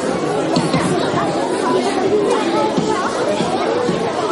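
A roomful of children chattering all at once: a steady babble of many overlapping voices with no single speaker standing out.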